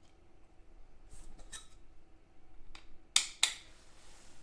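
Clear plastic magnetic one-touch card case being handled and snapped shut: a few faint taps, then two sharp plastic clacks about a third of a second apart near the end.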